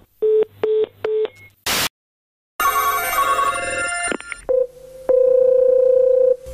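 Telephone line tones between two calls. First three short beeps of a busy tone, as the other party hangs up. After a click and a brief gap comes about a second and a half of telephone ringing, then a steady ringback tone as the next call connects, which is the loudest sound here.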